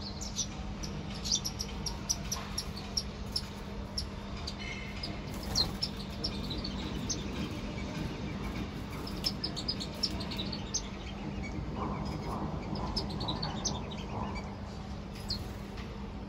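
Small birds chirping: quick runs of short, high chirps throughout, over a steady low hum.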